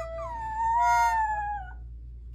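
A puppy howling along to a toddler's toy harmonica: one long howl that drops quickly in pitch at the start, holds, then slides slowly lower and stops shortly before the end. Under it the harmonica sounds short, steady held notes.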